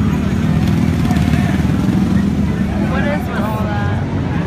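Dirt bike engine running loud and close, a steady low rumble, with people's voices in the background near the end.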